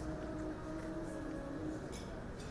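Soft background music with long held notes, with a faint click near the end.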